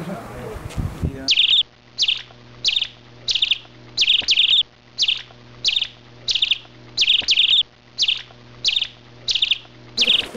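A chirping animal gives short, high, trilled chirps, repeated evenly about every 0.7 s, a few of them in quick pairs, over a faint steady low hum. The chirping starts suddenly about a second in.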